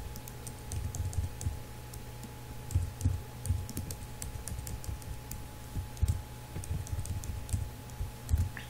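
Computer keyboard typing: irregular keystrokes in short runs, over a steady low electrical hum.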